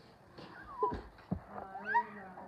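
Two short high-pitched cries: one a little under a second in, and a longer one near the end that rises in pitch. A couple of soft knocks come between them.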